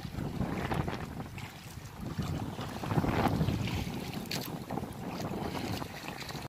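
Wind rumbling and buffeting on the microphone aboard a small outrigger fishing boat at sea, over the wash of the water. It is an uneven, gusting noise with no steady engine note.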